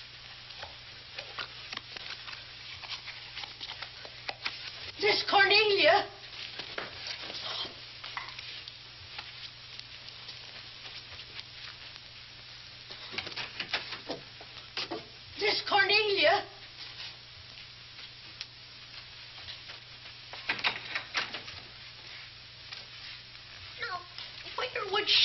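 Steady crackle and hiss of an old film soundtrack. It is broken twice, about five and fifteen seconds in, by a loud, wavering, high-pitched sound lasting about a second.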